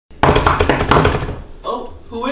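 A quick run of loud knocks on a wooden door, starting suddenly and lasting about a second.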